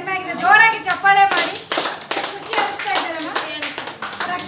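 Applause: hands clapping quickly and irregularly, starting about a second in and going on until near the end.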